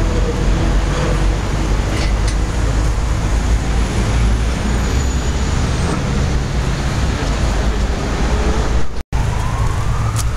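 Steady city street traffic noise, a continuous low rumble of passing vehicles, broken by a brief dropout about nine seconds in.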